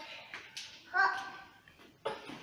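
A young child's short high-pitched vocal sound, heard once about a second in, over faint handling noise.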